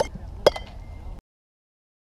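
Light youth metal bat striking a baseball off a tee with a short ringing ping, about half a second in. The sound then cuts off suddenly.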